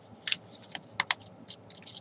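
Sheet of origami paper crackling and snapping in the fingers as its creases are pressed and popped into shape: a handful of sharp clicks, the loudest a quick pair about a second in.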